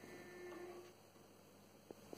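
Near silence from a turntable with its stylus lifted off the record: a faint held tone in the first second, then one small click from the tone arm being handled just before the end.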